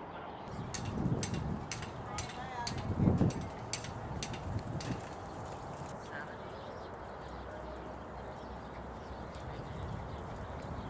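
Hoofbeats of a horse trotting on arena sand: a string of soft thuds and clicks over the first five seconds, then a steady outdoor hiss.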